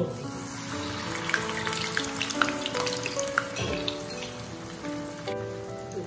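Medu vada batter of ground urad dal frying in hot oil in a small kadai: a steady crackling sizzle that starts as the batter drops in and eases off about five seconds in.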